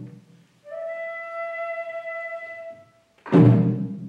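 Flute holding one long note that scoops slightly upward at its start and lasts about two seconds. A single loud, low drum stroke with a ringing decay follows near the end.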